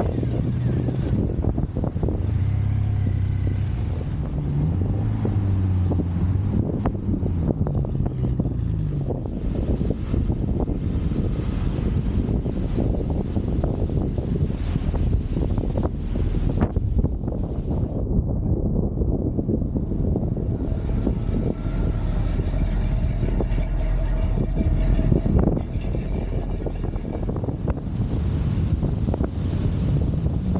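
Car engines running as cars drive off, with one engine's pitch rising and falling a few seconds in, and wind on the microphone.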